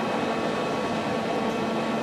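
Steady machine hum with a few faint steady whining tones from an idling CNC lathe, its spindle stopped.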